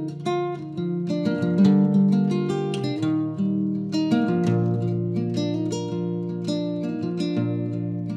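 Nylon-string classical guitar with a capo, playing an instrumental introduction: a run of plucked notes over ringing bass notes.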